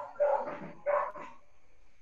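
A dog barking three times in quick succession, about half a second apart, heard over a video call.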